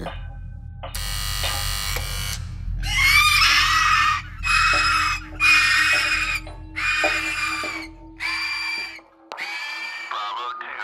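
A person screaming over and over, about six high cries of near a second each, over a low droning music score. The low drone stops about a second before the end.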